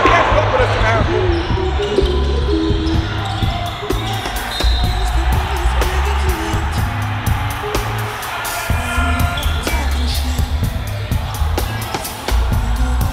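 A basketball bouncing on a gym floor, heard as a run of sharp knocks from about four seconds in, under music with a heavy bass beat and voices.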